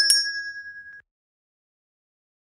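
The last strikes of a quick run of bright, bell-like dings, with clear ringing tones that fade out within about a second.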